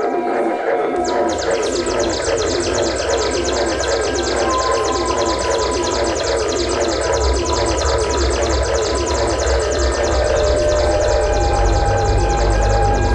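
Live experimental electronic noise music from synthesizers: a dense, fast-pulsing, stuttering texture with a few held tones sliding in and out. A low rumbling drone swells up from about halfway through.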